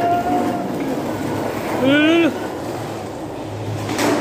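Skateboard wheels rolling over a concrete floor in a continuous rough rumble, with a person's short rising-and-falling shout about two seconds in.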